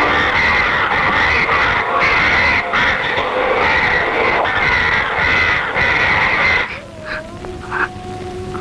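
A large flock of birds calling all at once, a dense, pulsing clamour, which cuts off about seven seconds in. A held musical note from the film score follows near the end.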